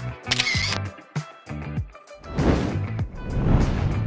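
A camera shutter sound effect clicks once, shortly after the start, over background music with a steady beat. In the second half a louder rush of noise swells up over the music.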